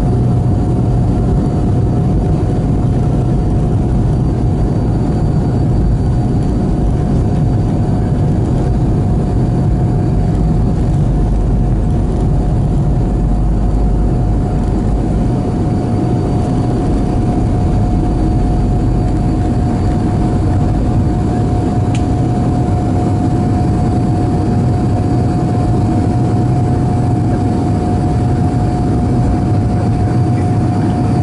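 Cabin sound of an Avro RJ100 'Jumbolino' during its takeoff roll and climb-out. Its Lycoming LF507 turbofans run at takeoff power, a steady high whine over a deep, heavy rush of engine noise.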